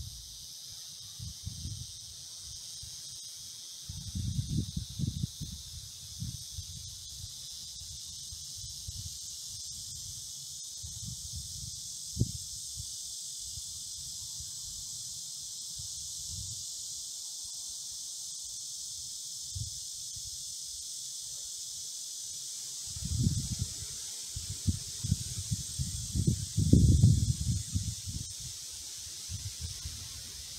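Steady high-pitched hiss of an insect chorus in summer trees. Low rumbling gusts come a few seconds in and again through the last quarter.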